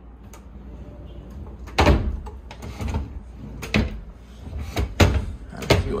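Closet drawers being slid shut and pulled open, with four sharp knocks as they bump home, the loudest about two seconds and five seconds in.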